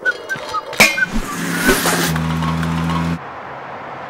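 A car going by on a city street, its engine giving a steady low hum for about a second before cutting off sharply, leaving a quieter street background.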